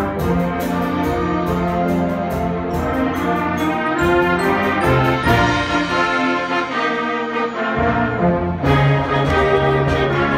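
Student concert band playing, with brass and woodwinds holding chords over a rapid pattern of short sharp strikes. The low instruments and the strikes drop out for a few seconds in the middle, then the full band comes back in strongly near the end.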